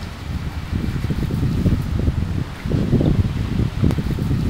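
Wind buffeting the microphone: an uneven low rumble that swells and dips, with no clear tone.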